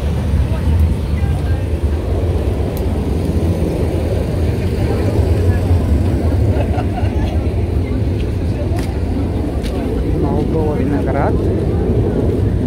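Outdoor market ambience: a steady low rumble, with the murmur of shoppers' and vendors' voices rising now and then.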